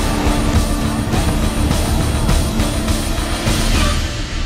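Loud, dense sound-effects bed: a noisy roar with a low steady drone and many irregular sharp hits, mixed with music.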